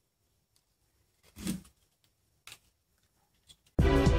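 A few short scrapes of a handheld deburring tool on the edge of a 3D-printed plastic battery module, the loudest about a second and a half in. Loud electronic music with a beat starts just before the end.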